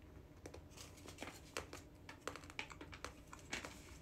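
Irregular run of small crisp clicks and crinkles, several a second, from a plastic snack pouch of chocolates being handled close to the microphone.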